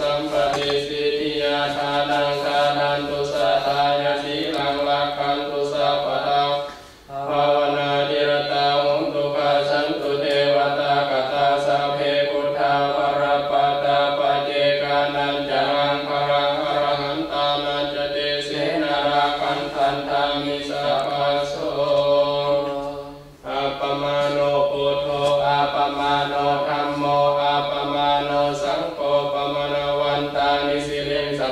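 Buddhist monks chanting Pali verses in a steady, continuous recitation. There are two brief breaks for breath, about 7 and 23 seconds in.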